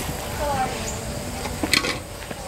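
Faint distant voices over steady outdoor background noise, with a few short knocks near the end.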